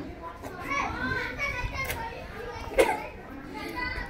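Children's voices, chattering and giggling, with one brief louder outburst a little before three seconds in.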